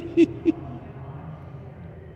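A man laughing: a few short, evenly spaced 'ha' pulses at a steady pitch in the first half second, then only a faint background.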